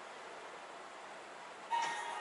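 Faint steady hiss of a quiet room, then near the end television sound cuts in abruptly with a held musical tone.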